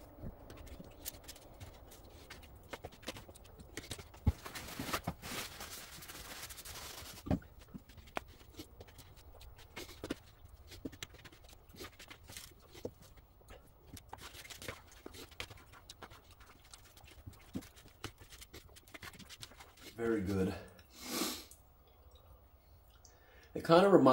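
Quiet eating sounds: a utensil clicking and scraping now and then against a pan or plate, with a stretch of rustling hiss about five seconds in. Near the end comes a short voiced hum.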